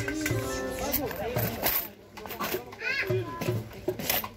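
A live pagode band's last notes ring out in about the first second, then the music stops and people talk, with a child's high voice among them.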